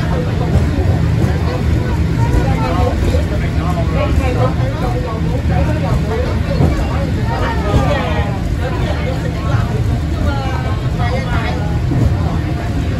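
Steady low rumble of a Peak Tram funicular car running on its track, heard from inside the car, with passengers talking over it throughout.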